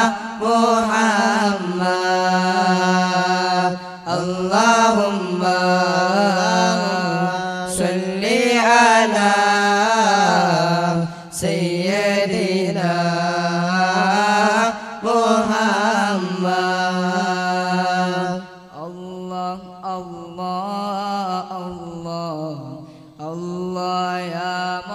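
Devotional Arabic salawat chanting: a voice draws out long, wavering melismatic phrases over a steady low held note. The singing thins and breaks up about three-quarters of the way through.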